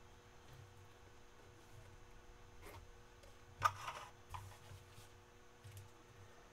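Faint handling of a trading card box being opened: a few soft clicks and rustles, with one sharper click about three and a half seconds in.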